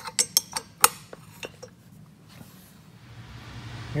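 Steel box-end wrench clinking on a rusted turbine-housing bolt as the bolt is worked back and forth to free it: a handful of sharp metallic clicks in the first second and a half.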